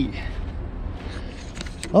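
A short laugh, then a low, steady rumble with a few faint clicks near the end.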